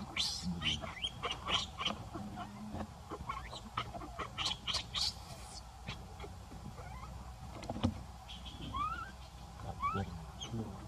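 Baby monkey crying in a run of short, high-pitched squeals, then a single rising whimper near the end: the cries of an infant begging to nurse and being refused.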